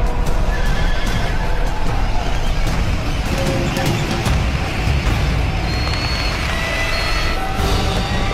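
Film battle soundtrack: horses neighing amid a dense, loud clatter, with music playing over it.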